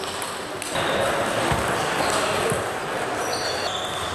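Table tennis rally: the celluloid ball clicking off the bats and table, with shoes squeaking briefly on the sports-hall floor and a murmur of voices in the hall.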